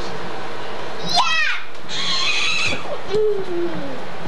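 A young child's voice squealing: a high cry that falls steeply in pitch about a second in, a shrill squeal just after, and a lower drawn-out falling vocal sound near the end.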